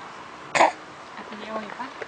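A single short cough close to the microphone, followed by faint brief voice sounds; the coughing child is most likely the toddler right at the camera.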